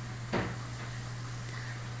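A steady low hum, with one brief short sound about a third of a second in.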